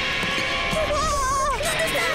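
Two cartoon characters screaming in fright, with a long wavering scream about halfway through, over tense horror-style background music.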